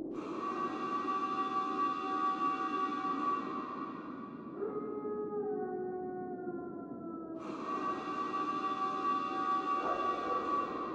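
Sustained electronic drone from the concert PA: several held tones that slide slowly downward in pitch about halfway through, then a new held tone comes in about seven and a half seconds in.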